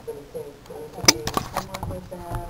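Clicks and knocks of an iPod Touch being handled, a cluster of sharp ones starting about a second in, after a faint voice at the start.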